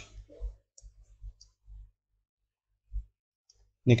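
A few faint, scattered clicks and low taps, with a quiet stretch in the middle: a stylus tapping and writing on a graphics tablet.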